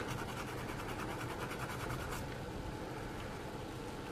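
Fine diamond needle file scraping back and forth along the mold line of a pewter miniature, quick even strokes, several a second. The strokes ease off after about two seconds.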